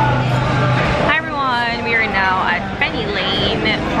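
People talking, with a steady low hum like motor traffic underneath during the first second.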